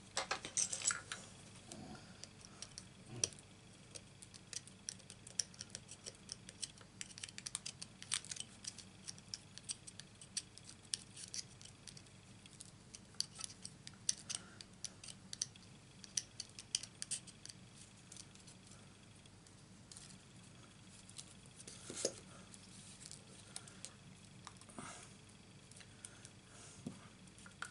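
Faint, scattered small clicks and ticks of a metal pick tool poking cut paper bits out of a thin metal cutting die, the clicks coming thickest in the middle, with one louder click near the end as the paper is worked free.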